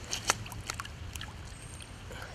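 Small splashes and drips of water as a rainbow trout is let go back into the lake by hand, the sharpest splash about a third of a second in.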